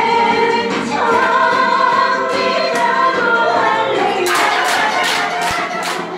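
A song with several voices singing, then hand clapping in time to the music from about four seconds in, roughly three claps a second.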